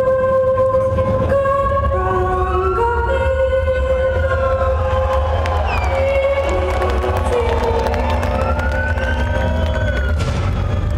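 Sustained synthesized notes with slow siren-like pitch glides that rise and fall, over a deep low drone, played loud through a metal concert's PA with no drums or guitars.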